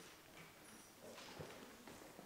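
Faint footsteps and a few soft knocks as a chair is moved and a man sits down at a table.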